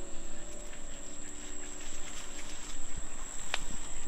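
Insects trilling steadily in the background, a high, unbroken tone, with a faint low hum beneath and one sharp click about three and a half seconds in.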